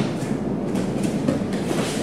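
Bare feet scuffing and bodies moving on foam gym mats during a body-lock takedown, with a few soft knocks, over a steady background noise.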